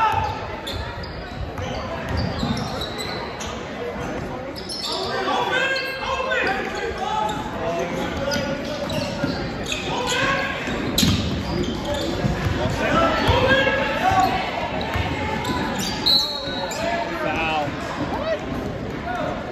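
Basketball bouncing on a hardwood gym floor during play, with a few sharper knocks, under steady spectator chatter echoing in a large gymnasium.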